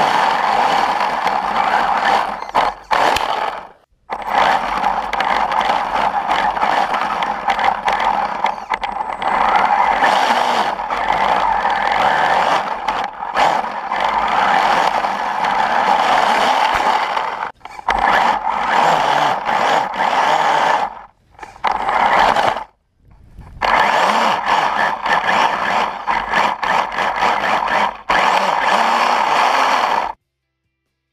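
Brushless electric motor and gearbox of a hobby-grade RC snowmobile driving its long track through soft snow, heard from on board: a steady whine with scraping. It drops out briefly about four times.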